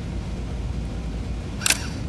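A single sharp click near the end, from a small speaker wired up as a continuity tester as the probe closes a circuit through the typewriter's membrane keyboard matrix, over a steady low hum.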